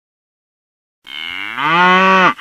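A single cow's moo, starting about a second in, its pitch rising and then holding before it stops.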